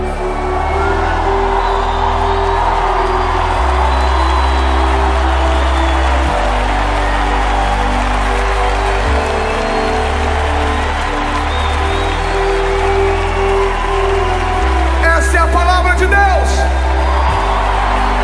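Live worship music: held keyboard-pad and bass chords that change every few seconds, under the massed noise of a large arena crowd cheering and singing. Near the end a man's voice calls out over the sound system.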